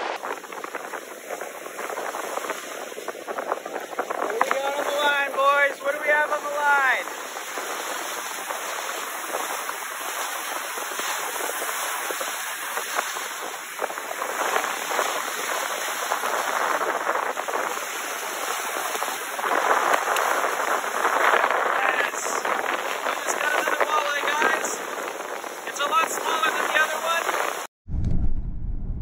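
Strong wind and choppy lake waves breaking against shoreline boulders: a loud, rushing noise that surges and eases with the gusts throughout.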